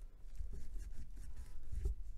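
Nitrile-gloved fingers pressing and rubbing along the edges of a smartphone's frame and back cover: soft rubbing with a few light knocks of plastic.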